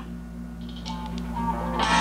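Music with guitar playing from a Samsung Galaxy A55 smartphone's stereo speakers, quiet at first, then fuller and louder near the end as the song comes in.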